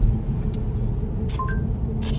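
Steady low road-and-tyre rumble inside the cabin of a moving Chevrolet Bolt EV, with no engine note. About a second and a half in comes a short two-note rising chime from the Android Auto voice assistant, acknowledging a spoken destination command.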